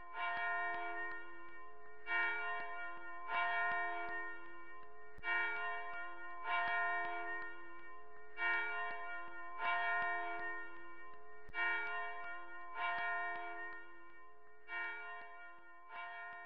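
A bell struck about ten times in an uneven rhythm, the gaps alternating between about two seconds and just over one. Each stroke rings on with the same cluster of pitches, overlapping the next.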